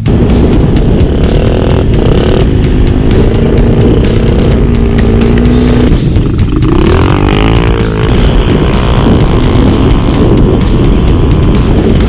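Dirt bike engine running and revving, the pitch rising and falling, under loud rock music.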